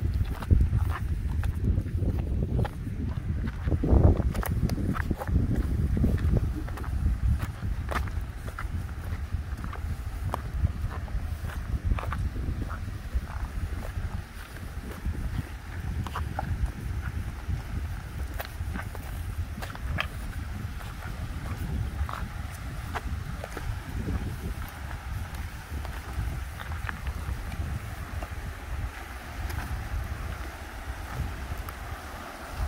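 Footsteps on loose river cobbles, with stones clacking underfoot in many short sharp knocks, over wind rumbling on the microphone. The wind is heavier in the first half. In the second half the rush of shallow river rapids comes through more steadily.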